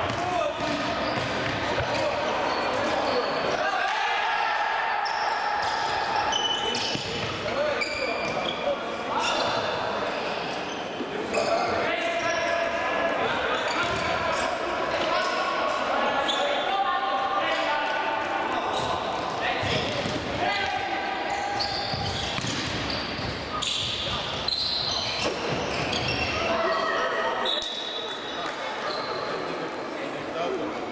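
Indoor futsal play in a sports hall: players' shouts and calls mixed with ball kicks and bounces on the court, echoing in the large hall.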